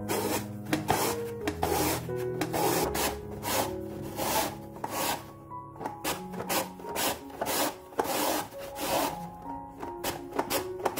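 A hard raw quince pushed back and forth over a plastic mandoline's julienne blade, each pass a rasping cut, about two strokes a second. Soft background music runs underneath.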